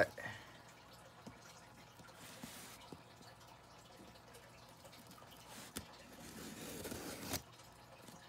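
Faint handling of a cardboard shipping box: a few small ticks and rustles as the taped lid flaps are worked loose, then a longer cardboard rustle that builds over about a second and ends in a sharp snap near the end.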